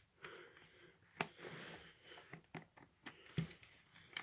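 A plastic double CD jewel case being handled: faint rustling with a few sharp plastic clicks, the clearest about a second in.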